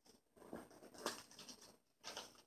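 Quiet, irregular rustling and crinkling of paper as a small gift is unwrapped by hand.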